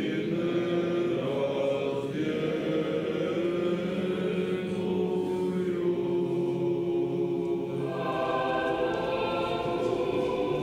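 Eastern Orthodox liturgical choir chanting in slow, held notes.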